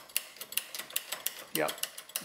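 Dillon XL650 reloading press's priming system worked by hand: an irregular run of quick metal clicks and clacks for about a second and a half. It is a test that the newly fitted small-primer setup cycles through, and it does.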